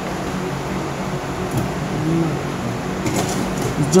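Steady fan-like background hiss, with a faint low voice briefly about two seconds in and a few light handling clicks near the end.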